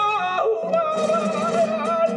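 Male flamenco cantaor singing a soleá: one long, heavily ornamented line, the voice wavering in pitch, moving to a new note about half a second in.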